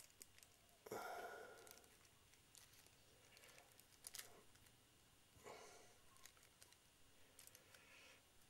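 Near silence with faint small snips of scissors cutting thin plastic shopping-bag film by hand, plus a short, soft, slightly louder sound about a second in.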